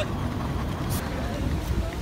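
Outdoor background noise: a steady low rumble with faint voices of people around.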